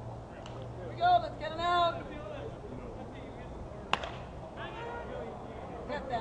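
Ballpark sound with a steady low hum and voices shouting on the field about one and two seconds in, then a single sharp crack about four seconds in: a bat hitting the softball for a base hit.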